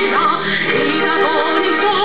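A symphony orchestra performing an operatic-style anthem, with a high melody line in wide vibrato over sustained chords.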